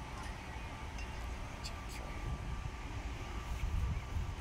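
Wind rumbling on the microphone, with faint distant voices and a few faint clicks.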